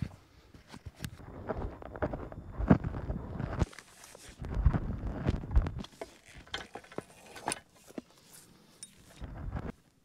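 Footsteps and rustling handling noise as a portable winch is carried up and set onto a steel tree-mount bracket, with a few sharp metallic clicks and clinks in the second half.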